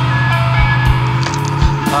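Rock band music: a steady low bass note under held higher melodic tones, with drum-kit hits and cymbal strokes.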